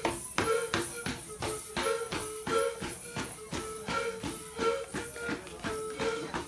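Traditional Emberá dance music: a drum beaten at a steady pulse of about four strokes a second under a short, repeated high melody.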